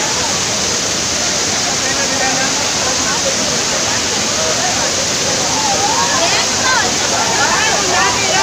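Waterfall pouring down onto a crowd of bathers: a loud, steady rush of falling water. Many voices of the crowd chatter and shout over it, more clearly in the last two seconds.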